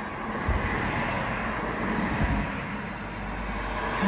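Steady noise inside a car: a low rumble with an even hiss over it.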